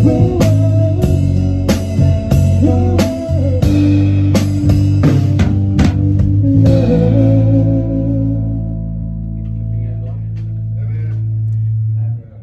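Live band with drums, guitar and bass guitar playing the closing bars of a song: steady drum hits over the chords until about six seconds in, then a final held chord that rings for several seconds and is cut off suddenly at the end.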